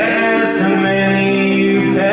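A man singing live, holding long notes, over a strummed acoustic guitar.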